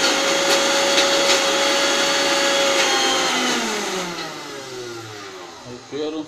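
Electric mixer grinder (mixie) running at a steady pitch while grinding coriander chutney, with a few light ticks from the jar. About three seconds in it is switched off, and its motor winds down with a falling whine until it stops.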